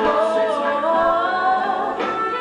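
Voices singing a musical-theatre duet over backing music, holding long notes that glide between pitches, heard from a television.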